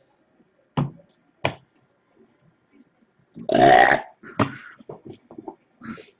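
A man burps once, a short rough burp about three and a half seconds in. Before and after it come a few short sharp taps and clicks from hands handling cards on the table.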